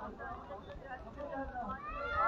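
Voices of people playing in the snow, with scattered chatter and high, gliding calls that grow louder near the end.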